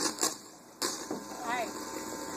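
A microphone on its stand being handled: a few sharp knocks in the first second, then a brief snatch of voice over a low steady hum from the sound system.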